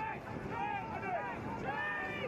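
Distant shouting voices from players calling to one another across an open field, several at once, over steady wind noise on the microphone.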